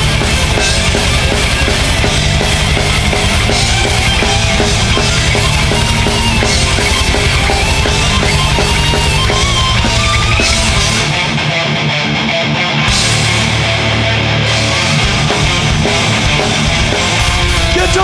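Live heavy metal band playing an instrumental passage: distorted electric guitars over drums, loud and dense throughout. A little past halfway the low drums and bass thin out for a few seconds before coming back in.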